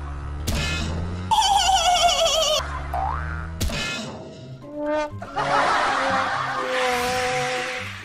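Cartoon sound effects over background music for a motorcycle crash. A wobbling, warbling tone is cut off by a sharp crash about three and a half seconds in, then a springy boing-like effect and a long noisy crash sound follow.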